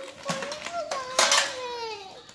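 Small metal gift tins clattering as they are handled and opened, loudest about a second in, over a long, high, wavering voice-like tone.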